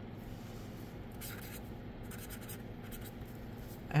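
Fine felt tip of a dual-tip marker writing on paper: a few soft, scratchy pen strokes about a second in and again around two seconds in.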